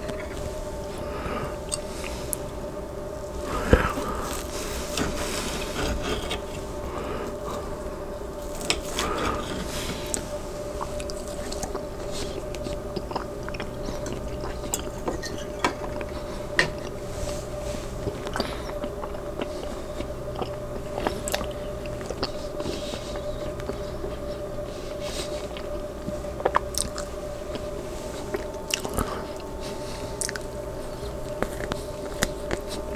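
Close-miked chewing of grilled rib-eye steak, with sharp clicks and scrapes of a steel knife and fork cutting on a ceramic plate; the loudest clink comes about four seconds in. A steady hum runs underneath.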